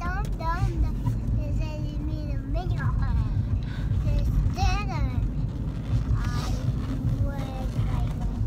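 A young child singing in a high voice, in short phrases with sliding pitch, inside a moving car, over the steady low rumble of the car's road noise.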